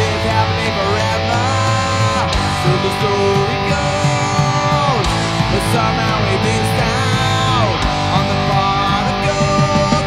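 Rock band playing an instrumental stretch, with an electric guitar lead over bass and drums. The lead notes slide down in pitch about three times.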